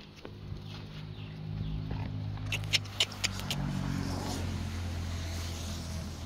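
A motor vehicle's engine running, a low steady hum that grows louder over the first couple of seconds and shifts in pitch around the middle. A few sharp clicks come close together about halfway through.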